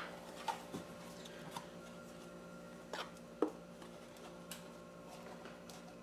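Quiet room tone with a faint steady hum and a few faint, scattered clicks and knocks of things being handled.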